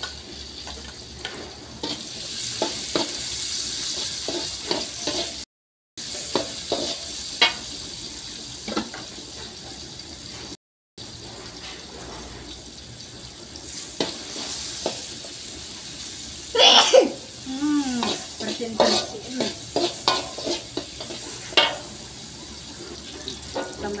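Spice paste and tomato pieces frying in an aluminium wok with a steady sizzle, while a metal slotted spatula scrapes and knocks against the pan as the food is stirred. The sound cuts out twice for a moment.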